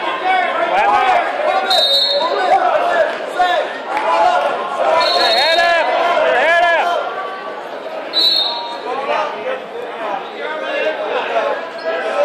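Spectators at a wrestling match shouting and cheering, several voices calling out over one another, loudest about five to seven seconds in. Three short high-pitched squeaks cut through, at about two, five and eight seconds.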